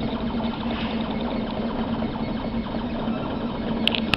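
A 3D printer running, its motors and fan making a steady mechanical whir under a constant low hum.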